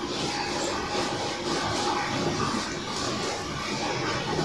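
A whiteboard duster rubbed back and forth across a whiteboard, making a repeated rubbing swish as the writing is wiped off.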